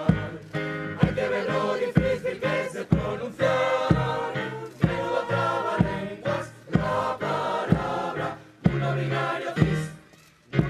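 A choir singing a pop-style song in Spanish over a bass line and a steady beat about once a second.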